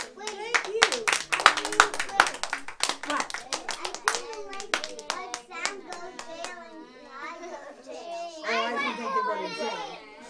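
A small audience of children applauding for about five seconds, then the children chattering and calling out.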